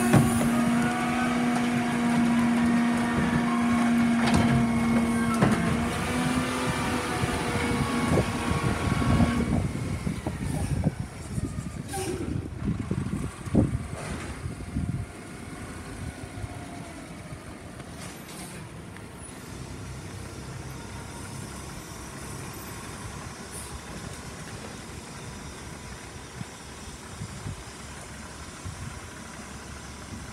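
Mack LEU garbage truck with a Heil rear loader body running its packer at the curb, a loud steady whine from the hydraulics and raised engine over the first nine seconds or so. Two short sharp sounds follow around twelve and fourteen seconds, then the truck's diesel engine runs more quietly and evenly as the truck moves off.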